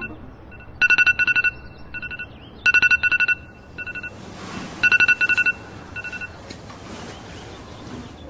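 A phone's electronic alert tone: loud trains of rapid high beeps, repeating about every two seconds with softer beeps between. It stops about six seconds in.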